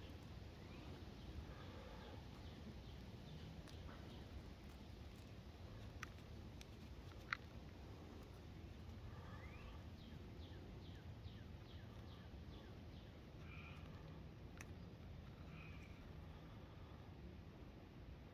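Faint outdoor ambience with distant birds chirping and calling, broken by a few sharp little clicks.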